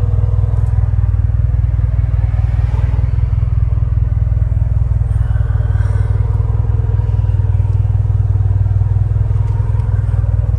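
Toyota MR2's swapped-in gen 4 3S-GTE turbocharged inline-four idling steadily through an aftermarket cat-back exhaust.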